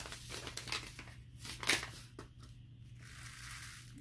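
Paper seed packet of chive seeds being torn open and handled, crinkling and rustling, with one sharp crackle a little before the middle, then a soft hiss in the second half as the seeds are shaken out into a hand.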